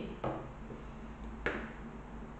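Pinking shears set down on a tabletop: a faint click just after the start and a sharper single knock about one and a half seconds in, over a low steady hum.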